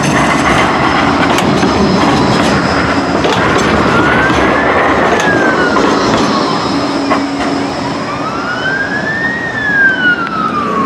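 Bombardier Flexity 2 tram rolling past close by on street track, a loud rushing with a few clicks from wheels and rails. From about four seconds in, an emergency vehicle's wail siren rises and falls in slow sweeps, twice.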